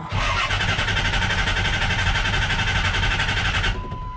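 Pickup truck's starter cranking the engine in a fast, even churn for about three and a half seconds, then cutting off suddenly. A thin steady electronic chime tone runs under it and carries on briefly after the cranking stops.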